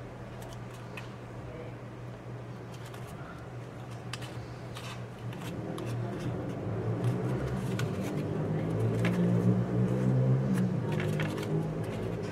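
Stiff folded paper being handled and pressed by hand, with light crinkles and clicks, over a low steady hum that grows louder about halfway through.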